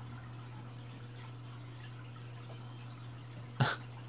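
Turtle-tank filter running: a steady low hum with faint trickling water. A single brief sharp sound stands out near the end.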